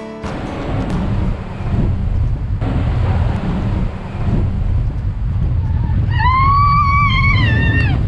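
Log flume ride in motion: a steady low rumble of the boat, water and air. Near the end comes a long, high, wavering scream from a rider that drops away as it ends.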